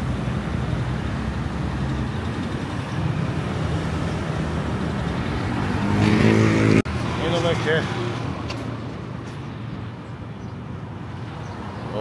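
Street traffic: cars and motorcycles running through an intersection. A louder engine passes close about six seconds in, then the sound cuts to quieter street noise with a few short voice-like calls.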